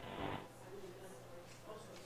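Faint hiss of the launch commentary's audio loop, which cuts off about half a second in as the channel closes after a call. A low steady hum is left under it.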